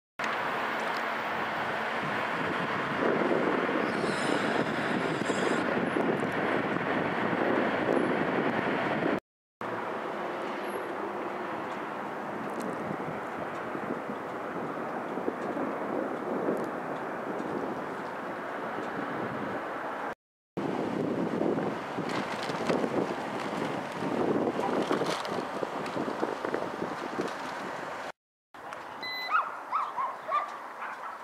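Outdoor street ambience: a steady rush of wind on the microphone and distant traffic, cutting out briefly three times. A few short higher-pitched calls begin near the end.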